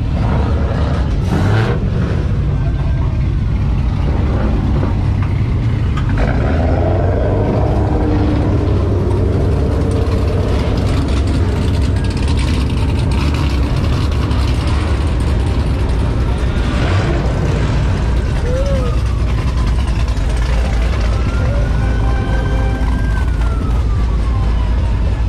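Car meet crowd noise: many car and truck engines running with a steady deep rumble under people's voices. In the second half a police siren rises and falls in pitch twice.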